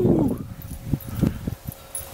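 A dog whines briefly near the start, followed by a few faint clicks.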